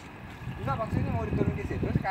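Soft, quieter talking over a low, steady rumble.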